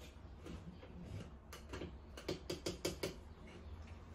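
Light plastic clicks and knocks, in a quick run in the middle, as the blade unit of a portable mini blender is twisted off its cup.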